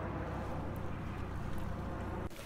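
Steady low outdoor rumble with a faint hiss and no distinct events, the kind of sound wind on the microphone makes on an open beach.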